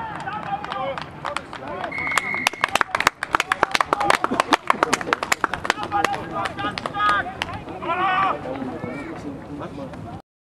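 Spectators clapping, dense and rapid for several seconds, with a short, steady referee's whistle blast about two seconds in and people calling out.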